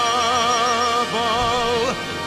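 Operatic solo singing: a voice holds two long notes with wide vibrato, the second a little lower than the first.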